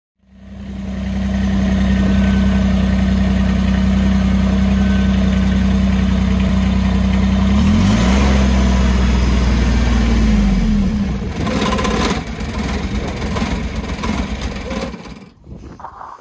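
Kubota BX23S tractor's three-cylinder diesel engine running steadily, then raised in speed about eight seconds in, the note climbing and falling back. Near the end the steady note breaks up into rough, uneven running: a misfire that the owner puts down to water in the diesel fuel.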